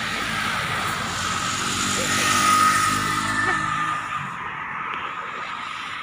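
City bus driving past close by: engine and tyre noise swell to a peak about two and a half seconds in and then fade as it moves away, with a steady whine over the engine.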